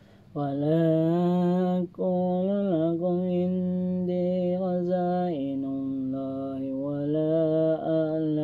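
A man chanting Quran recitation in Arabic, in slow melodic phrases with long held notes. It starts about half a second in, breaks briefly near two seconds, and steps down in pitch a little past halfway.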